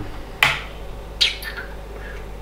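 Two brief sharp sounds from a 12-volt fluorescent ceiling fixture being switched off by hand: a click about half a second in, then a short sound falling in pitch just after a second in. A faint steady low hum runs underneath.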